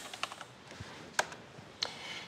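Computer keyboard keystrokes: about five separate, irregularly spaced key presses as a filename is typed into a save dialog.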